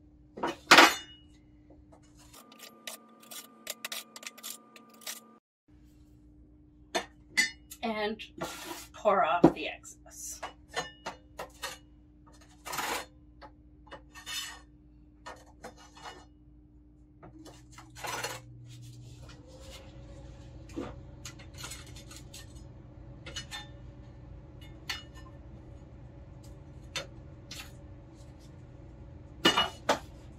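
Plastic capsule-filling machine being worked by hand: a flat spatula scrapes and taps across the plate, spreading powder into the capsule holes, with scattered clicks and knocks of the plastic parts. A steady low hum comes in about two-thirds of the way through.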